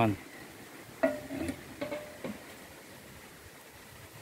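A few faint, brief voice sounds about a second in, then a quiet outdoor background.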